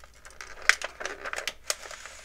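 Clear plastic packaging tray crinkling and crackling as an action figure is worked out of it, with two sharp snaps about a second apart.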